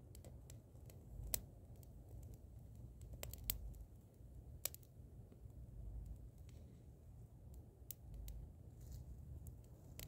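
Small fire from a paraffin-wax candle firestarter crackling faintly, with scattered sharp pops.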